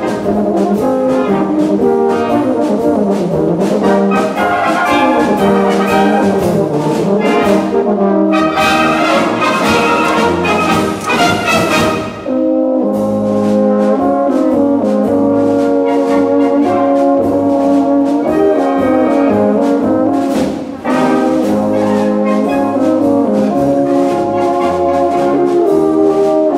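Two rotary-valve tenor horns playing a concert polka duet over brass band accompaniment, with short breaks between phrases about twelve and twenty-one seconds in.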